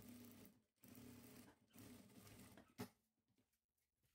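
Jack industrial sewing machine stitching faintly in three short runs, with a single sharp click near the end of the third and nothing after it.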